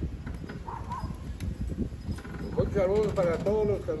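A low rumble of wind buffeting the microphone, with a few small clicks. A man's voice starts talking about two-thirds of the way in.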